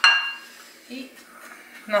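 A single clink of a kitchen utensil against dishware, ringing briefly and fading over about half a second.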